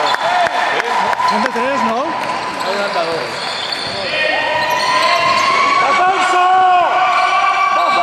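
A basketball being dribbled on an indoor court during live play, repeated knocks echoing in a large gym, with players' and spectators' shouting and a long, drawn-out call in the middle.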